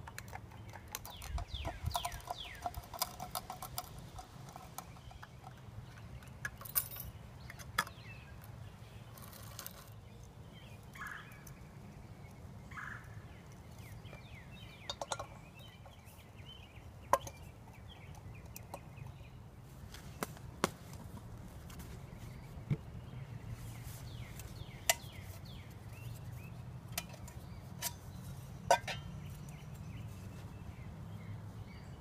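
Camp cooking gear and food containers being handled: scattered clicks, taps and clinks, busiest in the first few seconds and then single sharp knocks a few seconds apart, over a steady low hum.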